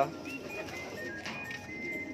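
Quiet background music with racing pigeons cooing faintly in the loft.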